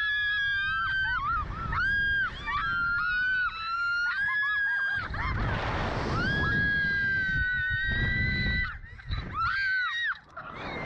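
Two young women screaming on a SlingShot reverse-bungee ride, a string of long, high-pitched screams one after another. Wind rushes over the microphone partway through as the capsule swings.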